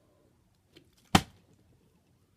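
A partly filled Ice Mountain plastic water bottle, flipped, lands upright on a hardwood floor with one sharp knock just over a second in: a successful bottle flip. A faint tap comes just before it.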